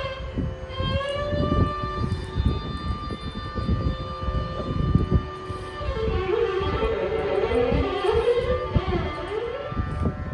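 Live Carnatic music: a long held melodic note, then violin playing gliding, ornamented phrases from about six seconds in, over mridangam drum strokes throughout.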